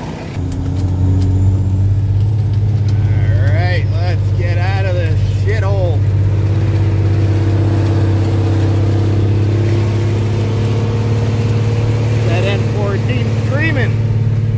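Cummins N14 inline-six diesel of a Freightliner Classic heard from inside the cab, pulling away about half a second in and then running on as a steady deep drone while the truck drives.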